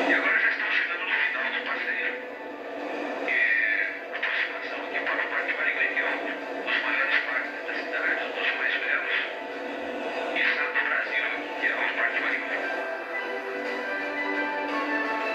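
A television soundtrack heard through a TV speaker: background music with a voice over it, thin with no bass.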